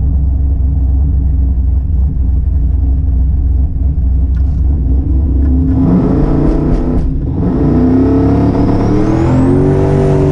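Single-turbo LS V8 in a drag Camaro running with a heavy low idle rumble, then revving up and down from a little past halfway, with a high whine rising near the end.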